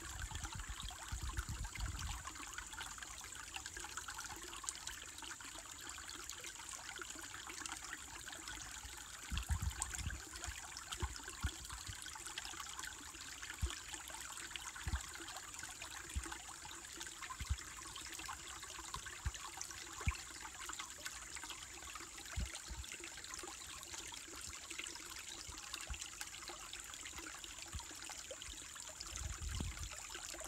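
Small, shallow woodland stream trickling, bubbling and gurgling over and between rocks, with a steady high insect drone from katydids behind it. A few short low thumps come near the start, about a third of the way in, and near the end.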